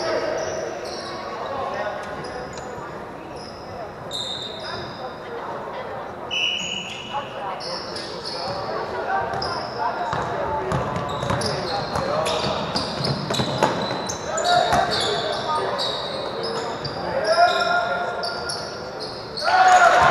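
Basketball game on a hardwood gym floor: sneakers squeak again and again in short high chirps, the ball bounces, and players shout, all echoing in the large hall. The shouting is loudest near the end.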